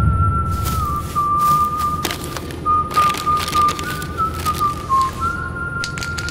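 Music with a slow whistled melody, one thin pitched line stepping gently up and down, over a steady low drone, with a few sharp clicks scattered through it.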